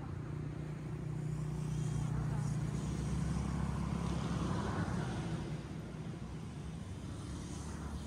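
A motor vehicle's engine running, a steady low hum that is loudest in the middle and eases off after about five seconds, over a general outdoor noise.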